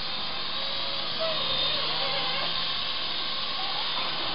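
Small indoor remote-control Apache toy helicopter in flight: a steady whir from its electric motors and spinning rotors.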